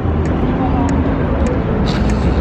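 Outdoor street ambience: a steady low rumble with faint voices in the background and a few light ticks.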